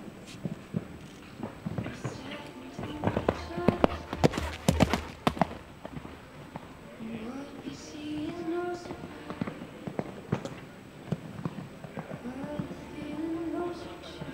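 Hoofbeats of a six-year-old Holsteiner show-jumping gelding cantering on a sand arena. A cluster of sharper, louder strikes comes about four to five seconds in.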